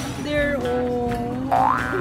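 Added music with held notes, then a springy cartoon boing sound effect: rising pitch sweeps that start about a second and a half in and repeat.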